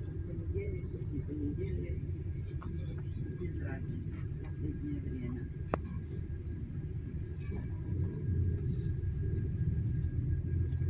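Low engine and road rumble heard inside a moving tour bus, growing a little louder near the end, with faint indistinct voices in the cabin. A single sharp click comes just before six seconds in.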